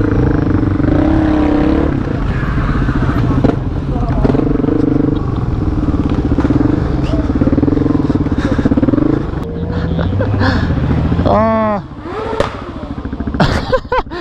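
The single-cylinder four-stroke engine of a 2016 Suzuki DRZ400SM motorcycle runs steadily under light throttle at low speed. It eases off about nine seconds in. Near the end a loud voice-like call rises and falls.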